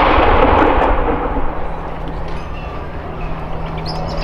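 The rolling echo of a 105 mm L118 light gun's blank salute round, loud at first and dying away over about two seconds.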